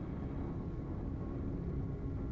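Huge copper drum turning over an open fire: a steady low rumble with sustained droning tones from the horns set in its sides, which sound the cries of the people shut inside as an eerie music.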